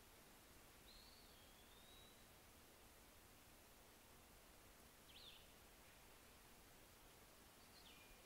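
Near silence with a few faint, high bird chirps: a wavering whistle about a second in, then short chirps near the middle and near the end.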